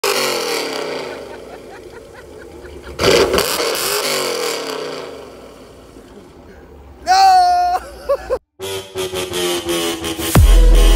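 Cammed 5.7-litre Hemi V8 of a Dodge Challenger revved twice, once at the start and again about three seconds in, each rev dying away to idle. Near the end comes a short pitched sound, then, after a brief cut, electronic intro music begins.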